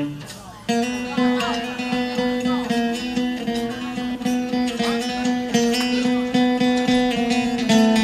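Guitars played live on stage: one chord rings out and fades, then about a second in an acoustic guitar starts strumming in a steady rhythm over a sustained guitar note.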